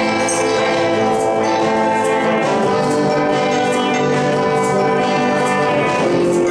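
Live band playing an instrumental intro: guitars under long sustained chords, with a tambourine hit about once a second.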